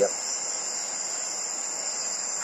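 Crickets chirring steadily, a continuous high-pitched trill.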